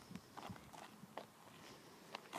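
Faint footsteps on a gritty roadside pavement: a few irregular scuffs and taps.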